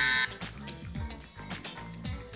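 Background music with a steady beat. At the very start, a short, loud electronic buzzer tone from the quiz-game app.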